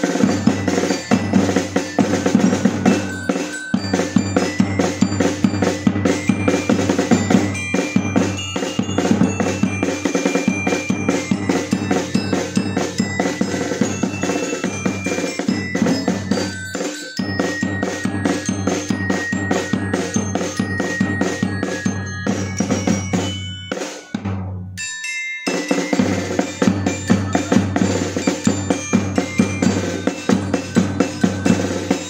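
Carol singers' street percussion band: snare-type and large bass drums beaten in a fast, steady rhythm, with a xylophone playing a tune over them. The playing breaks off briefly twice, near the middle and again about 24 seconds in, then carries on.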